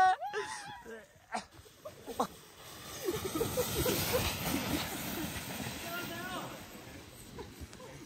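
A sled sliding down a snowy slope with two riders aboard: a noisy hiss and scrape of snow that swells as it passes about three to four seconds in, then slowly fades.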